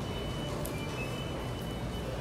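Large store's ambient noise: a steady low hum with a high electronic beep that repeats on and off.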